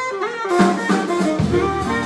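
Live jazz combo playing: a saxophone lead over piano, upright bass and drum kit. The bass and drums drop out briefly at the start and come back in about half a second in.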